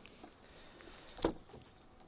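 Hands working a tightened bowline knot in thick rope loose: faint rope handling with one sharp click a little past halfway.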